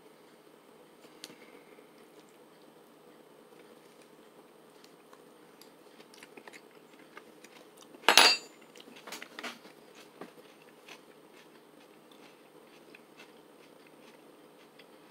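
Someone quietly eating guacamole with a spoon: faint scattered clicks and handling sounds of spoon and food tub over a low steady room hum. About eight seconds in there is one loud short noise, followed by a few lighter clicks.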